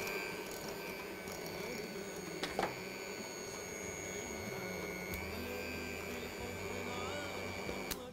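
Electric hand mixer running at a steady whine, its beaters churning thick chocolate muffin batter in a glass bowl, with one short click a couple of seconds in; the motor cuts off at the very end.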